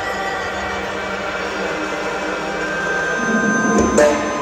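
Indoor percussion front ensemble playing music built on long held chords, swelling toward a louder accent right at the end.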